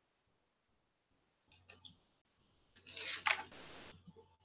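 A couple of faint clicks, then a brief rustle of paper with clicks about three seconds in: a textbook's page being handled and turned.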